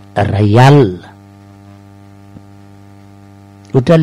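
Steady electrical mains hum, a low buzzing drone, running under a pause in speech. A short spoken phrase comes just after the start, and talking resumes near the end.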